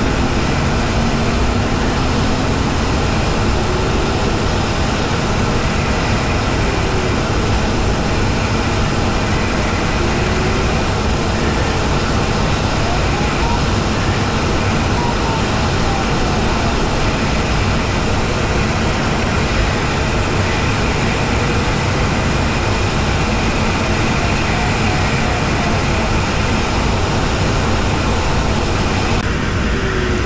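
Steady rush of air around the canopy of a Jantar Std. 2 fiberglass glider in flight. A faint variometer tone slides up and down in pitch now and then, tracking the glider's climb and sink.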